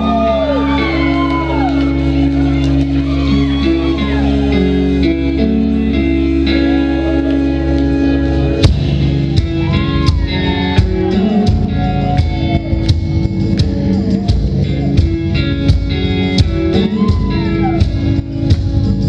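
A live indie rock band plays with sustained keyboard chords and a gliding melody line over them. About halfway through a loud hit marks the drums coming in, and they keep a steady beat from there.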